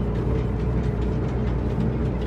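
International 9900ix heavy truck's diesel engine running steadily while driving, heard from inside the cab as a continuous low drone with a few faint clicks.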